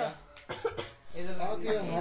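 A person coughs briefly about half a second in, then a voice is heard near the end.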